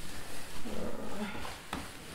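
Rummaging sounds of things being shifted and handled in a search, with a short low hum or mutter from a woman about halfway through and a sharp knock near the end.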